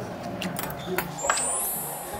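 A few short clicks and clinks of chopsticks and dishes on a restaurant table, with voices in the background. A bright rising high shimmer comes in a little past a second in and is the loudest thing.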